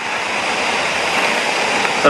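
Steady rush of running water, an even hiss with no breaks.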